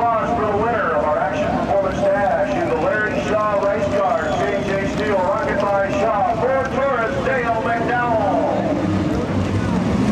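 Dirt late model race car engines running and revving as the cars roll slowly on the track, their pitch rising and falling over and over, over a steady background noise; the revving fades out near the end.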